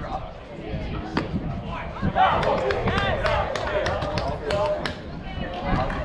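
Several voices calling out and chattering, loudest in the middle, with a scattering of sharp knocks.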